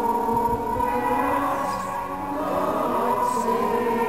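A women's choir singing slowly with organ accompaniment, in long held notes that shift pitch now and then.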